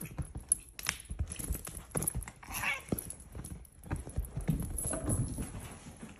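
Two cats chasing and scampering: irregular thuds and patter of paws landing on a couch and running across a hardwood floor.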